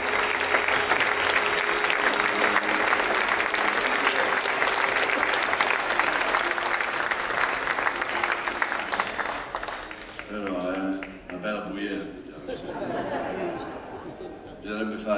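Theatre audience applauding, with an accordion holding a few long notes underneath. The applause dies away about ten seconds in.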